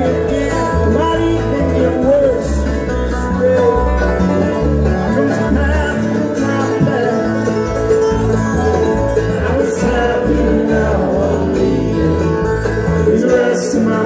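A live bluegrass band plays, with banjo and guitar picking over a steady, pulsing bass beat and some sliding notes in the middle range.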